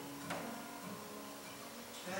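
Acoustic guitar played softly between sung lines, a note plucked about a third of a second in and low notes left ringing.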